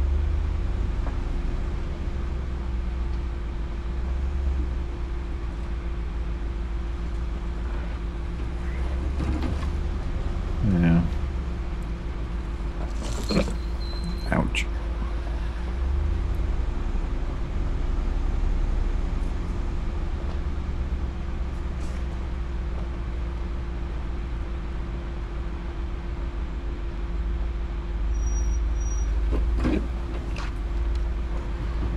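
Ram 2500 Power Wagon crawling along a rough dirt trail, heard from inside the cab: a steady low drivetrain rumble with a constant hum over it. A few brief squeaks and scrapes come about 11 seconds in and again at about 13 to 14 seconds.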